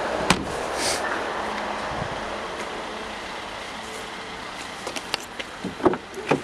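Handling noise around a car's boot and doors: a sharp knock about a third of a second in, then steady background hiss, with a few light clicks near the end as a rear door is opened.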